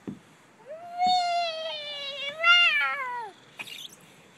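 A toddler's long, high-pitched squeal lasting nearly three seconds, rising in, wavering louder near the end, then falling away. A short knock comes just before it.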